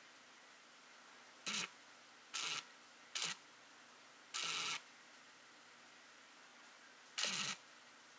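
Camera lens focusing motor whirring in five short bursts, picked up by the camera's own microphone over a faint steady hiss.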